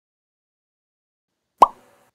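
Silence, then a single short plop sound effect about one and a half seconds in: one quick pop with a brief upward bloop in pitch that dies away at once, marking the cut to a new title card.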